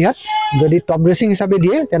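A man speaking, with a short, steady high-pitched call just after the start that lasts about half a second and sounds apart from his voice.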